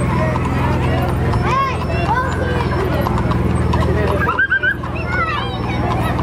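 Shod horses' hooves clip-clopping at a walk on asphalt, over a steady low hum and voices from the crowd.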